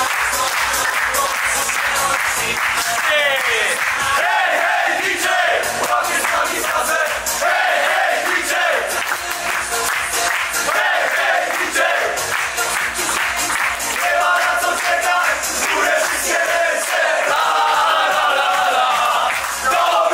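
A group of men chanting and singing together, with hand claps, over music with a steady beat.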